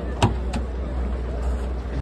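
Door latch of a Liebherr mobile crane's cab releasing as the door is pulled open: one sharp click about a quarter second in, then a softer click, over a steady low hum.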